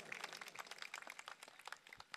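Applause, faint and dying away: many hand claps that thin out towards the end.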